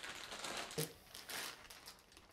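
Clear plastic bag crinkling as it is handled and pulled out of a fabric pouch, in a run of irregular rustles that fade toward the end.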